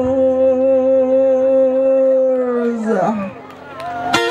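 A male singer holding one long sung note with a slight waver, then sliding down in pitch and fading out about three seconds in.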